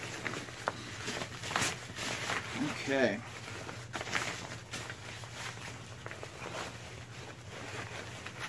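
Lightweight nylon pack fabric and a stuff sack rustling and crinkling as they are handled and pulled about, in scattered short rustles.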